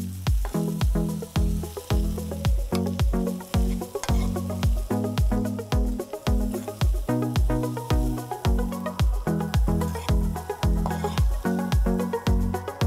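Background music with a steady, fast beat and a bass line. Under it, quinoa and vegetables sizzle in a hot frying pan as they are stirred.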